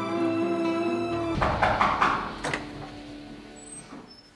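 Sad dramatic background score with held string notes. About a second and a half in it breaks into a loud noisy swell with a few sharp hits, the loudest part, and then thins to a single faint held note.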